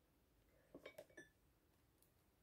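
Near silence, with a few faint light clicks about a second in: a wooden spoon set down against a glass plate.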